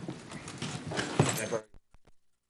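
Room noise of a meeting breaking up: shuffling and a few knocks on the dais with faint voices under them. The sound cuts off suddenly shortly before the end.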